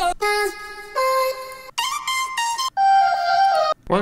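Future bass vocal loop from a sample pack, auditioned in the browser: chopped, processed sung vocal notes, each held on one pitch and stepping up and down as a melody, with a few sudden breaks between phrases.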